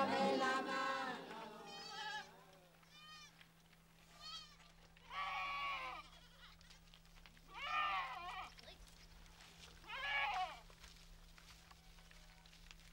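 Goats bleating, about six separate bleats spaced a second or two apart, the later ones louder.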